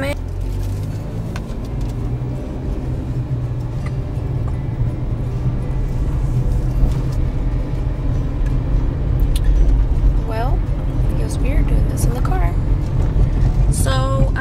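Inside a moving car's cabin: a steady low rumble of engine and road noise.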